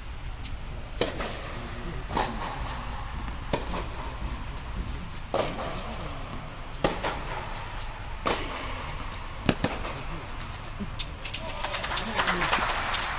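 Tennis rally: a tennis ball struck by rackets and bouncing on the court, one sharp pock about every second and a half, over a low murmur of spectators' voices.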